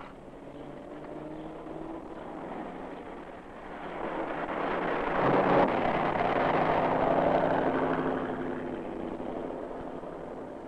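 A passing motor vehicle: a steady engine sound that swells to a peak about halfway through and then fades away.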